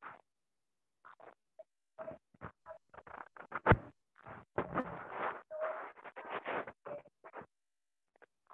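Stray background noise from participants' open microphones on a video call, cutting in and out in short fragments of clicks, rustles and bumps separated by dead silence, with one sharp knock a little before the middle.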